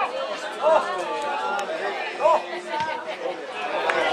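Voices of players and onlookers calling out and chattering across a football pitch, with two sharp shouts, the first just under a second in and the second just after two seconds.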